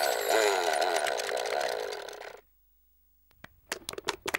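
Cartoon soundtrack: a buzzing, rapidly warbling sound that fades out over about two seconds, a moment of silence, then a quick run of sharp clicks and taps.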